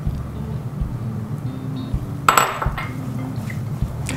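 Vinaigrette poured from a glass bowl and scraped out with a silicone spatula over a salad, then the salad tossed, with light clinks of glass and bowl and a brief louder clatter a little over two seconds in. Soft background music plays underneath.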